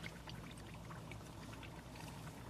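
Faint sizzling and crackling of battered onion rings deep-frying in hot oil, with many small pops.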